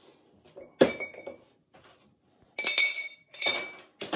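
Glazed stoneware pottery being handled against kiln stilts and furniture: a sharp clink about a second in, then two louder ringing clinks near the end as the fired ware knocks and scrapes on ceramic.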